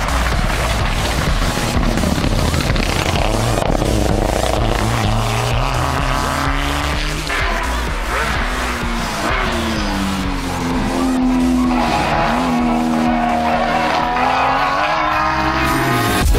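Rally car engine revving on the stage, its pitch rising and dropping several times with the gear changes, mixed with electronic dance music with a steady beat.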